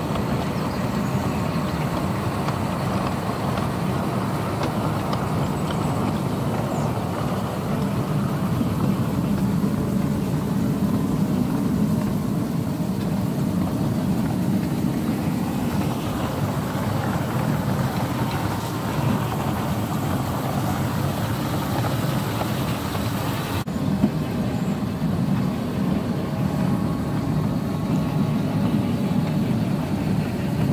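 Ride-on miniature garden railway train running along its track, a steady rumble of wheels and locomotive heard from a trailing passenger car, with a single click about three-quarters of the way through.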